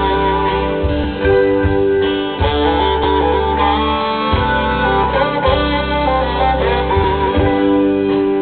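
Live rock band playing: a saxophone solo over electric guitar, bass and drums, with sustained notes and a bass line changing every second or two.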